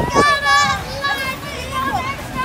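Children's excited, high-pitched shouts and squeals, several voices overlapping.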